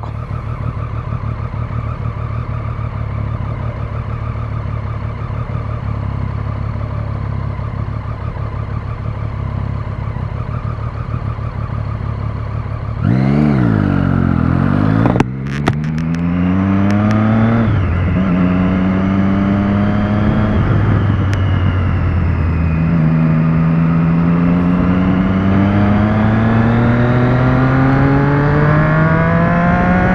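Motorcycle engine cruising steadily at first, under a low drone. About thirteen seconds in it gets louder and the bike accelerates hard, the engine note rising through the gears with a brief drop at each upshift and a long climb near the end.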